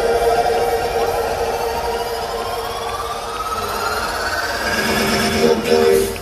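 Live electronic dance music build-up from a DJ set over a festival sound system: the kick and bass drop out and synth sweeps climb steadily in pitch, with a short stuttering chord near the end.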